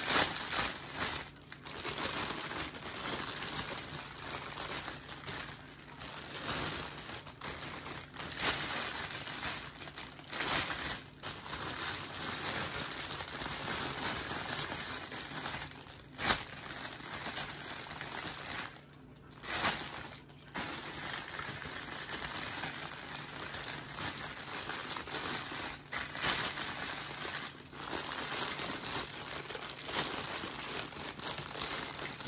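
Clear plastic gift bag crinkling and rustling continuously as it is handled and gathered around a wicker basket, with a few sharper crackles along the way.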